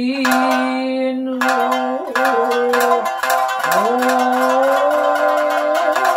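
Nagauta sung by a woman's voice in long held notes that slide and rise slowly, accompanied on her own shamisen. The shamisen is struck with a plectrum in quick repeated notes, which grow dense from about one and a half seconds in.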